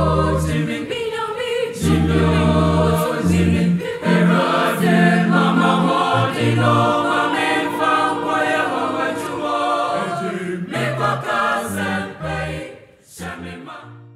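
Mixed-voice choir singing in harmony over sustained low bass notes from an electronic keyboard, fading out near the end.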